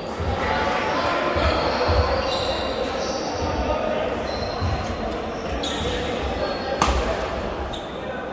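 Badminton play echoing in a large sports hall: rackets striking the shuttlecock, with one sharp strike near the end, and repeated thuds of players' feet on the court floor. Steady voices from players and spectators around the hall run underneath.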